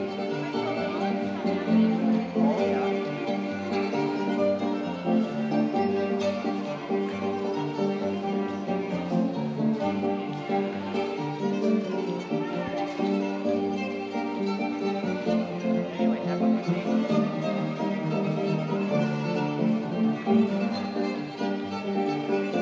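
Fiddle playing an instrumental tune live, with an accompanying instrument.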